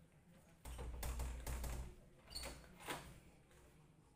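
A burst of knocking and rubbing with a dull low rumble, about a second long, followed by two shorter knocks.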